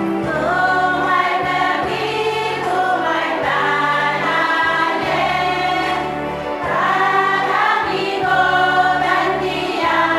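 A choir of women singing a hymn-like song together, phrase after phrase, over held low bass notes that change every second or two.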